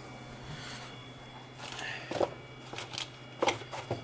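Faint handling noises: a few light clicks and knocks with soft rustling as hands work the RA3 rotary's locking wheel and reach into the foam parts case, over a low steady hum.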